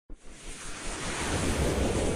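A swelling rush of noise, like wind or surf, building steadily in loudness after a short click at the start: the opening whoosh sound effect of an animated logo intro.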